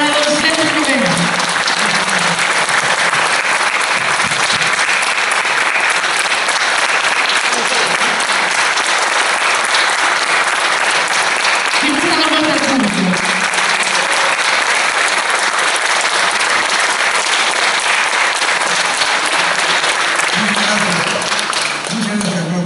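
Audience applauding steadily and at length, with a voice or two heard briefly through it.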